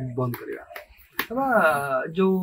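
Men talking, broken by a short pause about halfway through, ending in a single sharp click, followed by one long drawn-out word with a wavering pitch.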